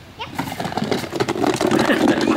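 A young child's excited, wordless calls and shouts.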